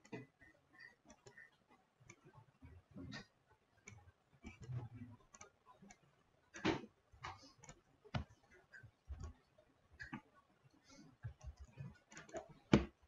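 Faint, irregular clicking of a computer mouse, with a couple of louder clicks a little past the middle.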